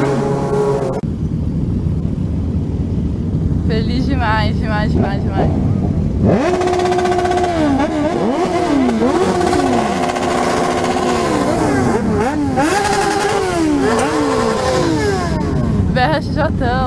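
A group of motorcycles revving at a standstill: from about six seconds in, several engines are blipped over and over, their pitch climbing and dropping in overlapping waves. Before that, a motorcycle engine runs steadily on the move for about a second, then a lower rumble of idling engines and traffic.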